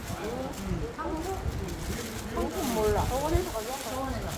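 Indistinct conversation of several people talking over one another, with a low rumble underneath.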